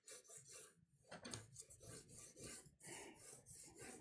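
Charcoal pencil scratching on toned drawing paper in faint, quick sketching strokes, about four a second.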